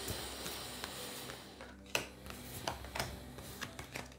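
A tarot deck being shuffled by hand, a soft rustle of sliding cards for the first second and a half. Then a few light taps as cards are drawn and laid down on the table.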